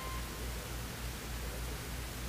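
Steady hiss and low mains hum from an old recording's soundtrack in a pause between narration, with a short, thin steady tone lasting well under a second right at the start.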